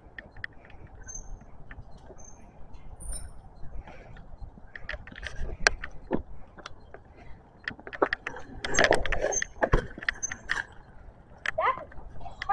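Bicycles being ridden on a paved street: irregular clicks and rattles from the chain, freewheel and frame, denser and louder around nine seconds in.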